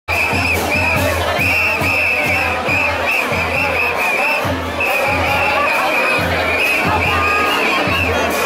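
A charanga (Spanish street brass band) playing with a steady drum beat over a noisy, cheering crowd, with repeated high shrill notes sounding above it.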